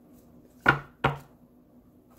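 Two sharp knocks, about a third of a second apart, from a tarot deck being handled and knocked against the table during shuffling.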